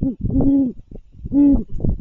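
Great horned owl hooting: two short, soft hoots about a second apart, each rising and falling slightly in pitch.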